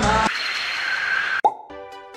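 A song cuts off and a hissing transition sound effect sweeps in, ending in a short plop about a second and a half in. A soft background music bed of steady chiming notes with a light regular tick then begins.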